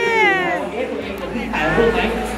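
A high-pitched, drawn-out vocal sound from a person, sliding down in pitch over about half a second, then another short voiced sound near the end.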